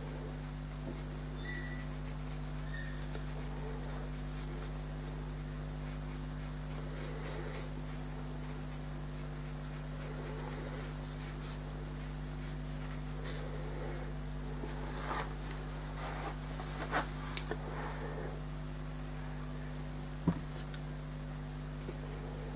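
Steady low electrical hum, with faint scratches and dabs of a paintbrush on watercolour paper in the second half and one sharp light knock near the end.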